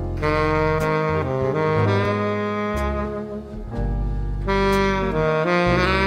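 Tenor saxophone playing a slow jazz melody of held notes in two phrases, over a backing of low sustained bass notes.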